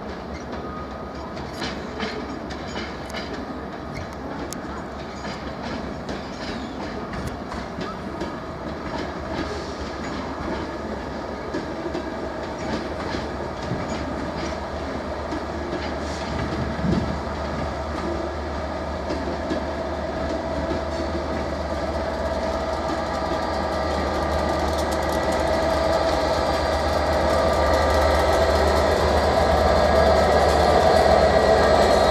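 Rake of Mark 4 coaches led by a driving van trailer rolling past at low speed, wheels clicking over rail joints and pointwork. The Class 67 diesel locomotive propelling at the rear grows steadily louder as it approaches, and its engine drone takes over near the end.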